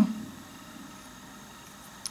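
Quiet room tone: a faint, steady background hiss, with the tail of a voice dying away in the first moment.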